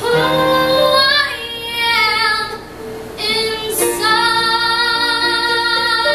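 A young girl singing a slow ballad into a microphone, holding long notes with vibrato in two phrases, with a short breath between them about halfway.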